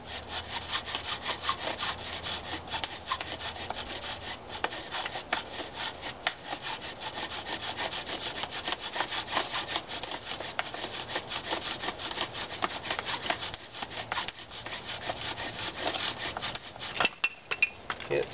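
Bow drill running: a wooden spindle spun back and forth by the bow, grinding in the fireboard's hole with a steady rasp that rises and falls with each stroke. A few louder knocks near the end as the drilling stops.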